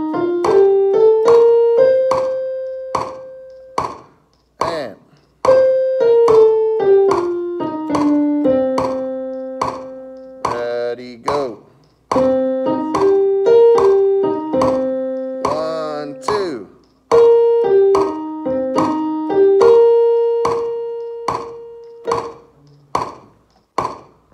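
Portable electronic keyboard in a piano voice playing the C Dorian scale one note at a time, up an octave and back down, twice. It holds the top and bottom notes, goes with a C minor seventh chord, and runs over a steady backing beat.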